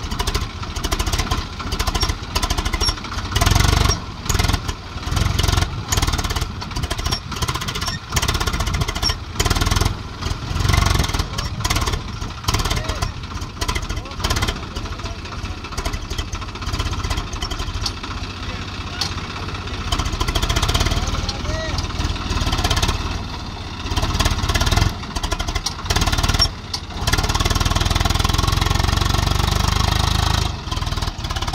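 Swaraj 744 XT tractor's three-cylinder diesel engine working under load as the tractor tries to drive out of soft sand with its wheels dug in. The engine is uneven, then runs steadily louder near the end as the rear tyre spins and throws up sand.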